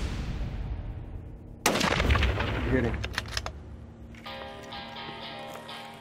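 A single hunting rifle shot about a second and a half in, with a low rumble trailing after it. A short spoken word follows, and music comes in near the end.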